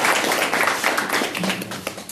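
Audience applauding, the clapping thinning out toward the end.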